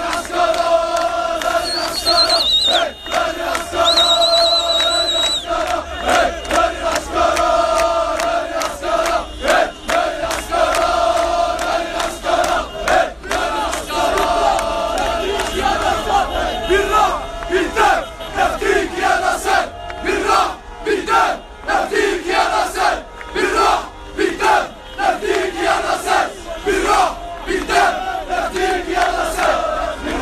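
A large crowd of protesters chanting and shouting slogans together. A shrill whistle sounds twice in the first few seconds.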